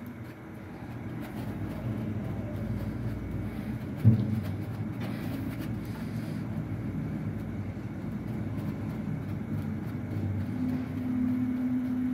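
Viking service elevator car running downward: a steady low rumble and hum of the moving car and its machinery, with one sharp thump about four seconds in and a steady low hum tone coming in near the end.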